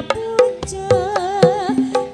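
Live Javanese campursari music: a female singer's wavering, ornamented vocal line over sustained instrument tones and hand-drum strokes about twice a second.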